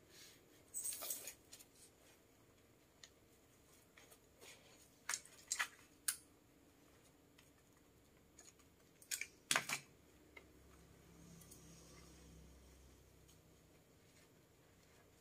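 Hands working white tulle net and non-woven bouquet fabric: a few short, sharp rustles and crinkles spread through an otherwise quiet stretch, the loudest about five and a half and nine and a half seconds in.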